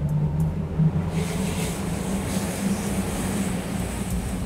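Axopar 28's outboard engines throttling up. The engine note climbs over the first second, then holds steady under the rush of wind and water as the boat gathers speed.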